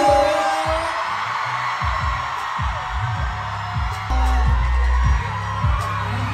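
Live pop concert music heard from the crowd: a song with a deep bass line and a kick drum about twice a second, a sung line from the stage at the start, and the audience screaming and cheering over it. The bass grows heavier about four seconds in.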